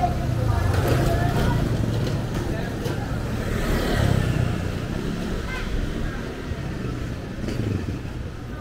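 Motorcycle engines passing close by on a busy street, swelling about a second in and again around four seconds, over indistinct voices of people nearby.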